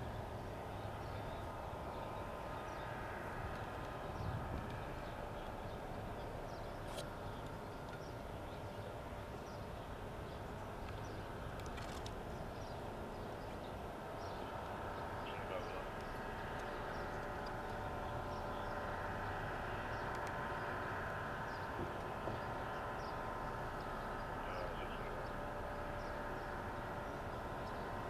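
Steady outdoor street ambience: vehicle traffic and running engines, with faint indistinct voices and a few small chirps.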